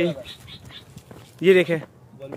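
A man's voice calling out: a call tails off at the start, then a short loud shout comes about a second and a half in.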